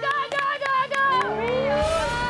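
A voice holding wavering sung notes, then, about a second and a half in, a horn whose pitch rises and then holds. The horn is the start signal for the sweeper arm to begin turning.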